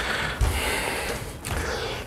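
A person moving and crouching down: a soft rustle of clothing and movement, with a low thump about half a second in and another near the end.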